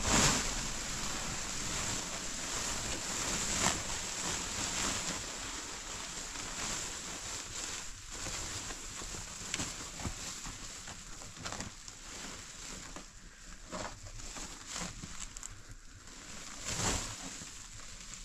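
Blue plastic tarpaulin crinkling and rustling as it is unfolded and spread out by hand. There is a louder flap of the sheet at the start and another near the end.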